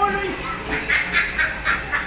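People laughing hard, in a quick run of short laughs about five a second.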